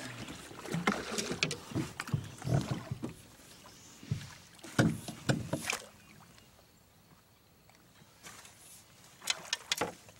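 A hooked channel catfish splashing at the surface beside a boat as it is netted, in irregular bursts that are loudest about five seconds in. Near the end come several sharp knocks as the landing net is lifted against the boat.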